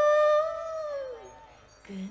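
A pesinden, a female Sundanese gamelan singer, holds one long sung note through a microphone. About a second in, the note slides downward and fades, and a new note begins low and rises near the end.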